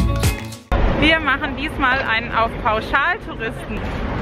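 Background music that stops abruptly less than a second in, then a woman talking.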